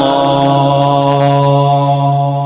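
A muezzin chanting the adhan (Islamic call to prayer), drawing out the close of "ash-hadu an la ilaha illallah" in one long, steady held note.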